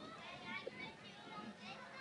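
Faint, distant voices of players and spectators at a soccer game: scattered shouts and chatter, with no close voice.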